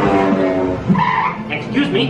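A boat dark ride's show soundtrack playing over speakers: music, with cartoon character voices coming in about halfway.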